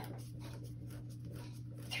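Faint scratchy creaking of a small screw being turned by hand with a screwdriver through a plastic lid into wood, over a low steady hum.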